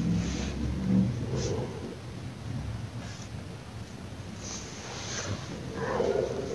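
Soft rustling of bedding and handling noise from a phone microphone as it is moved over a bed, with a low rumble underneath. Several brief rustles come through, one near the end.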